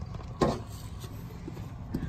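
A steady low hum in the background, with one short knock about half a second in and a faint click near the end.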